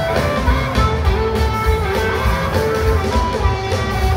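Blues band music: guitar playing held notes over bass and drums with a steady beat.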